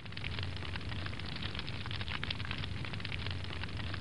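Fire sound effect: steady, dense crackling of flames over a low rumble.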